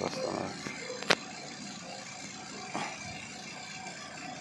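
A single sharp click about a second in, and a smaller one near three seconds, from hands working a fitting on a refrigerator's copper refrigerant tubing by the compressor. A steady low hum runs underneath.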